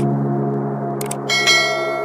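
Background music intro of sustained low chords, with a short click about a second in followed by a bright bell-like ding that rings out: the sound effect of an on-screen subscribe button and its notification bell.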